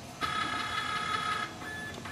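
Flatbed scanner of a Pantum M6507NW laser multifunction printer running a scan: the scan-head motor whines with several steady pitches for a little over a second, then a fainter single tone follows.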